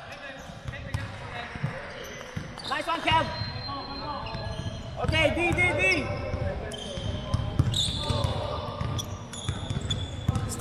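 Basketball game on a hardwood court: the ball bouncing and players' feet thudding, with players' voices calling out about 3 and 5 seconds in.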